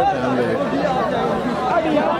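Crowd of spectators chattering, many voices talking over one another without pause.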